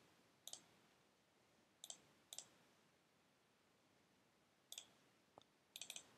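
Near silence broken by about six faint, short clicks from working a computer, a couple of them in quick pairs.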